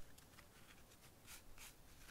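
Faint scraping of bare hands digging and scooping dry earth at the bottom of a clay pit, a few short scratchy strokes.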